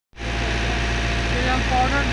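Backhoe loader's diesel engine running steadily, a constant low hum with a faint steady whine above it, with a man's voice starting near the end.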